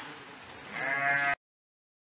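A sheep bleats once, loud and quavering, starting about two-thirds of a second in, and is cut off suddenly after about half a second.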